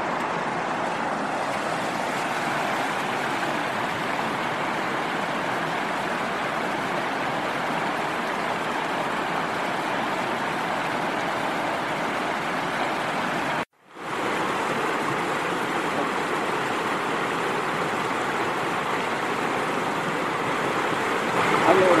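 Steady rush of river water spilling over a low stone weir, with a sudden break of under a second about two-thirds of the way through.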